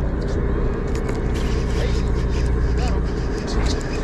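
A fishing boat's engine running steadily with a constant low hum, with scattered short clicks and rattles of the rod and baitcasting reel being handled from about a second in.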